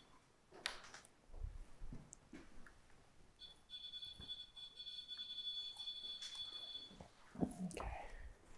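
A steady, high-pitched electronic tone from a handheld device, held for about three and a half seconds starting a little before halfway through, with a few soft knocks and shuffles of movement around it.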